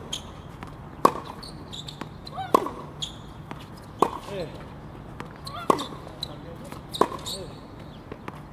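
Tennis rally on a hard court: a ball struck back and forth by racket strings and bouncing on the court, making sharp pops about every second and a half.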